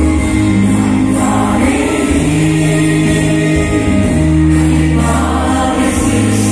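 A congregation singing a hymn together in chorus, over an accompaniment of long-held low notes that change every second or two.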